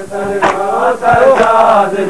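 A crowd of men chanting together in a drawn-out melodic chant, with sharp slaps of hands on bare chests (matam, ritual chest-beating) breaking in at uneven intervals.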